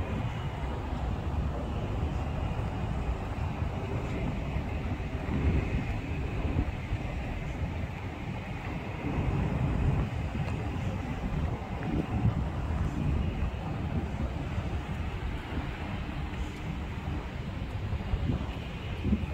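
Wind buffeting the microphone, an uneven low rumble that swells and dips in gusts, over steady outdoor ambience.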